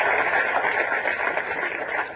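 Audience applauding, a steady dense clapping that begins to die away near the end.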